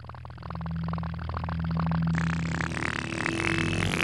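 A machine-like sound effect: a fast rattling whirr over a low steady drone, growing louder and brighter about halfway through.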